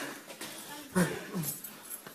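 Short voiced sounds from people, loudest about a second in, with a second one shortly after.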